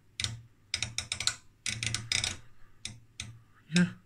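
Front-panel knobs and rotary selector switch of a Heathkit OS-2 oscilloscope being turned by hand: irregular sharp clicks, some in quick runs of three or four.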